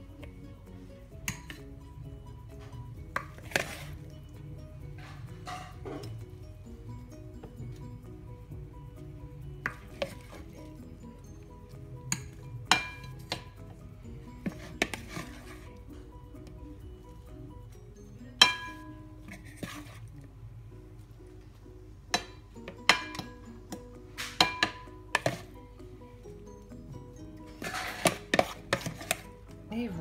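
Plastic salad servers clicking and knocking against a plastic bowl and glass plates as lettuce is lifted and dropped onto the plates, with scattered sharp clinks, a few of them ringing off the glass, and a quicker run of knocks near the end. Faint music plays underneath.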